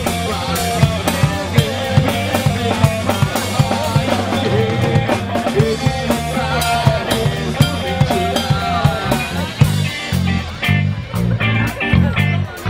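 Live rock trio playing an instrumental passage: an electric guitar line that bends in pitch over bass and a drum kit keeping a steady beat with cymbals. About ten seconds in, the cymbals drop out and the playing turns choppy, with short breaks between hits.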